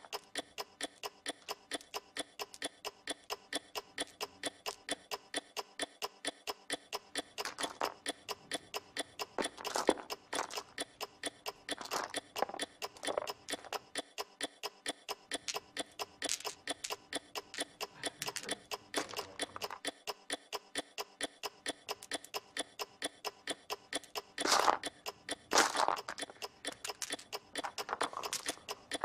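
Steady clock-like ticking, about three ticks a second, with several louder clattering rustles of many small dice being pushed and swept about on a carpet.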